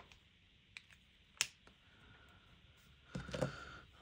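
A few sharp plastic clicks from handling acrylic paint markers on a table, the loudest about a second and a half in, then a short burst of rattling and handling near the end.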